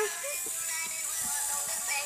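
A light-up toy ball's music chip plays a thin, high-pitched electronic tune at a steady level.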